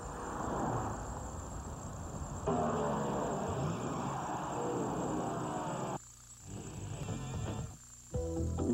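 Music with a loud roar under it, growing louder about two and a half seconds in and dropping away suddenly about six seconds in.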